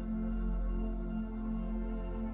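Slow ambient meditation music: soft sustained tones held over a low steady drone, gently swelling.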